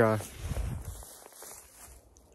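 Footsteps and rustling through tall dry grass, fading toward the end, with a low rumble on the microphone in the first second.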